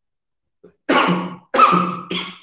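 A man coughing: two coughs close together, the first about a second in.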